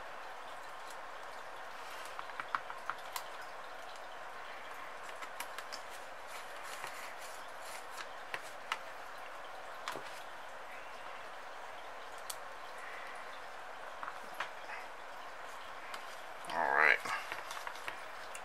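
Scattered light clicks and taps of small metal screws and standoffs being handled and fitted on a carbon-fibre quadcopter frame, over a steady hiss. A brief murmured voice comes near the end.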